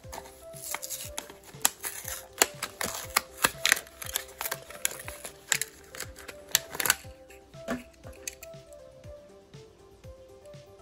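Clear plastic blister pack of a Hot Wheels card crackling and snapping as it is torn open and the diecast car is pulled free: a dense run of sharp, irregular crackles for about seven seconds, then only a few. Soft background music with a simple melody plays throughout.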